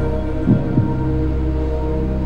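Quiz-show suspense music: a held droning chord with a double heartbeat-like thump about half a second in, the waiting music after an answer is given.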